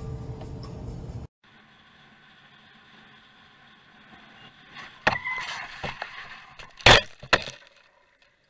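Music stops abruptly about a second in, followed by faint steady riding noise. In the second half a motorcycle crashes: sharp bangs with scraping between them, the loudest bang near the end followed quickly by another hit, and then the sound cuts off.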